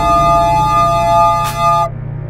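Electronic music playing back: a held synthesizer chord over a pulsing bass line, with a light cymbal tick about a second and a half in. The chord cuts off just before the end.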